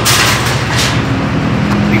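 Steady low hum of a motor vehicle's engine running close by, with a loud rush of noise in the first second.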